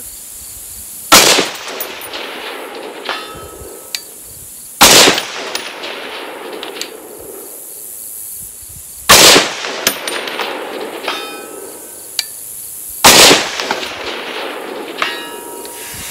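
Four shots from a Bear Creek Arsenal .308 AR-10 rifle, a few seconds apart, firing PPU M80 ball ammunition. About two seconds after each shot comes a faint ring from a distant steel target being hit.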